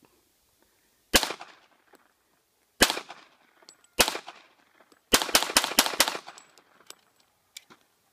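Pistol shots: three single shots spaced a second and a half apart, then a fast string of about six shots about five seconds in, each shot trailing off briefly.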